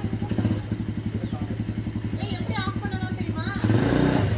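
Small quad ATV engine idling with a fast, even putter; it gets louder near the end.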